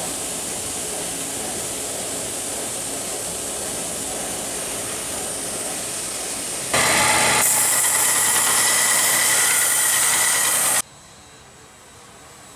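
A machine running with a steady rushing noise, growing louder for a few seconds near the end, then cutting off suddenly.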